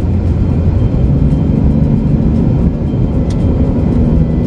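Steady low rumble inside a car's cabin with the car running, with a brief click late on.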